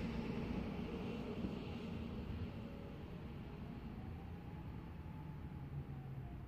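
Steady low rumble of distant town traffic, slowly fading, with the siren silent between activations.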